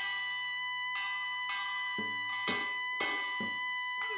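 Korean traditional ensemble: a taepyeongso (Korean shawm) holds one long, steady high note over buk drum strokes about twice a second.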